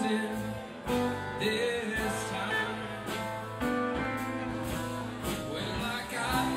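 Live band playing electric guitars and drums, with a steady bass line under the guitars and cymbal hits over the top.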